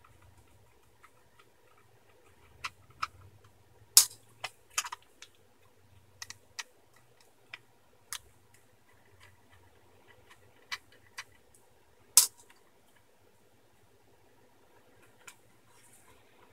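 Small screwdriver undoing the screws that hold a metal shield to a 2.5-inch laptop hard drive: scattered light clicks and ticks at irregular intervals, the sharpest about four seconds and twelve seconds in.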